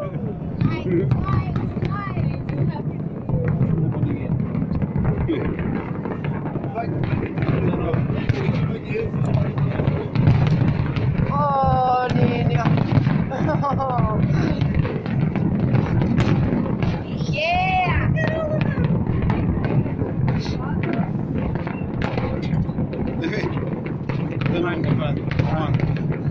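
Large fireworks display with many shells bursting at once: a dense, continuous crackle and popping over a steady low rumble of booms.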